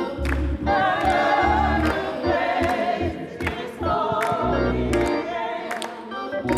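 A gospel choir of women singing together, with low sustained accompaniment notes and sharp hand claps cutting through every second or so.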